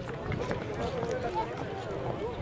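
Indistinct people's voices talking, with a few faint clicks.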